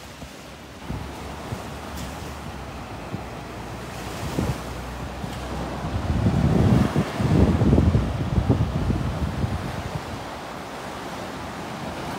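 Small sea waves washing onto a sandy beach, with wind rumbling on the microphone. The sound swells louder from about six to nine seconds in as a wave surges up close, then eases back.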